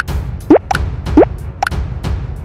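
Intro-animation sound effects: short rising pitch blips, two in quick succession with smaller higher pips after each, over background music with a steady low bass.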